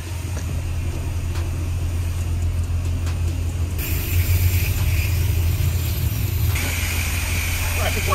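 High-pressure wash wand at a self-serve car wash starting to spray about four seconds in, a steady hiss of water jetting onto the car and wet concrete. A steady low hum runs underneath the whole time.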